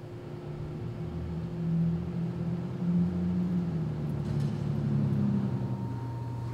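Steady low mechanical hum, engine-like, that swells slightly about two seconds in.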